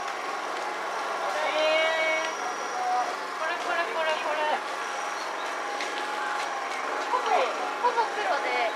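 Background crowd chatter: several people talking at once nearby, with no one voice clear.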